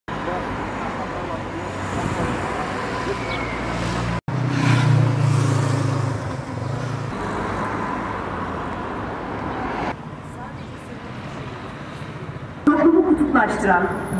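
Street ambience with road traffic noise, including a vehicle's engine hum a few seconds in. The sound changes abruptly at two edit cuts. A voice starts speaking near the end.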